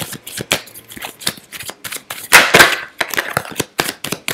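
A deck of tarot cards being shuffled by hand: a quick run of card slaps and flicks, with a louder rustling rush of cards a little past the middle.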